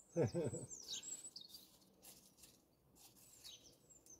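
A man's short laugh in a few quick pulses at the start. After it, faint bird song: repeated high chirps that each sweep downward.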